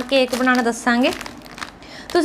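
A woman talks for about a second, then a biscuit packet's wrapper crinkles faintly as it is handled.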